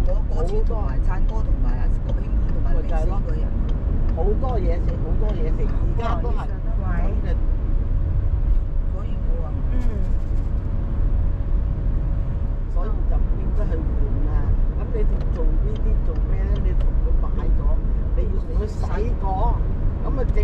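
Steady low rumble of a car driving on city roads, heard from inside the cabin, with voices talking on and off throughout.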